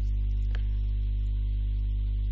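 Steady low electrical mains hum with a stack of overtones, with one faint click about half a second in.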